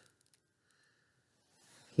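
Very quiet handling of small plastic doll parts: a few faint, short clicks in the first half.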